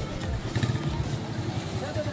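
A small engine running with a steady low pulse, amid voices of people close by.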